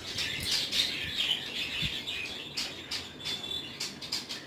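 Birds chirping and chattering in the background, with a few light clicks in the second half.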